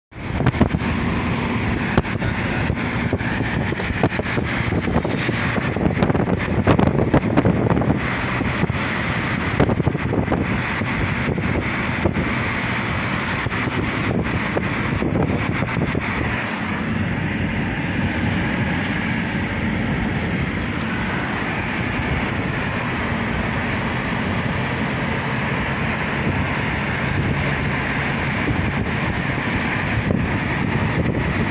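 Steady road and wind noise of a car driving at speed, heard from inside the car. Irregular crackles come in over the first half, then the noise runs on evenly.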